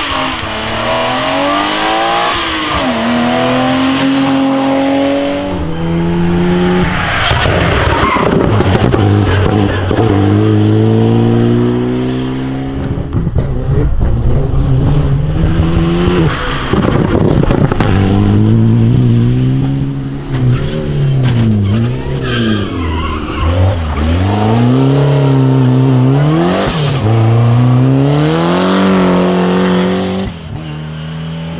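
Several rally cars, among them a BMW 3 Series saloon and an Alpine A110, passing one after another at full throttle on a tarmac stage. The engine note climbs steeply through each gear and drops sharply at every shift, with quick blips and dips where the cars brake and shift down for corners.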